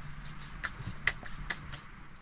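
Light rustling and taps of food and utensils being handled on a plastic chopping board, with a few sharper clicks in the middle, over a faint steady low hum.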